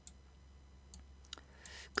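A few faint, scattered clicks from drawing on a computer screen with a mouse or pen cursor, the strongest about a second and a half in, over a steady low hum. A short breath comes just before the end.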